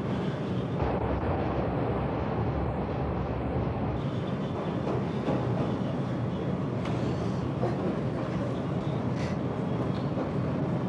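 Steady rumble of a moving public-transit vehicle heard from inside the passenger cabin, with a couple of faint clicks in the second half.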